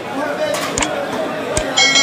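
Market crowd chatter with a few sharp clicks, then a bright ringing chime near the end. These are the sounds of a like/subscribe/notification-bell animation: clicks for the button presses and a bell ding.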